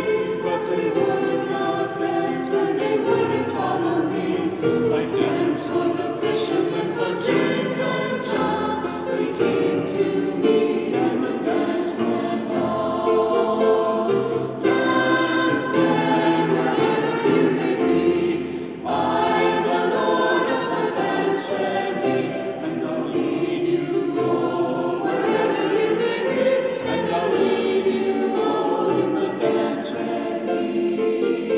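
Mixed choir of women's and men's voices singing together in a large stone cathedral, with one brief break between phrases a little past the middle.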